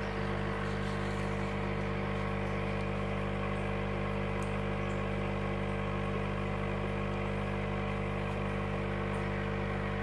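Steady low electrical hum of an aquarium air pump driving the tank's sponge filters and airstone: an even buzz with a stack of overtones that does not change.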